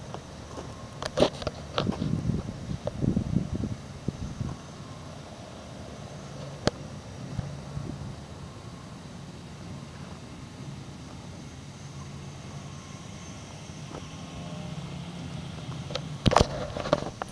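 Steady low background hum, with a few irregular knocks and rustles in the first few seconds and a single sharp click about seven seconds in.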